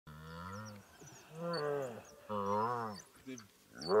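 Hippo calf bawling in distress as African wild dogs bite it: three drawn-out, low, pitched calls. High-pitched chirps from the wild dogs run over the top.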